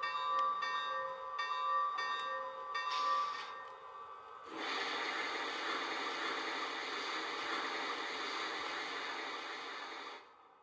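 A model steam locomotive's electronic sound-system bell rings about twice a second, then stops after about three and a half seconds. About a second later a steady rushing noise with a held tone in it starts and carries on, louder than the bell.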